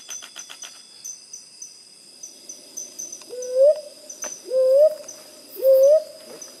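Sunda frogmouth calling: three short, loud, rising whistled notes in the second half, about a second apart, over a steady high drone of insects.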